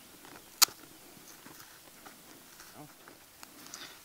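Faint rustling and small crackles of a J-cloth being peeled gently off a sheet of dried homemade paper, with one sharp click about half a second in.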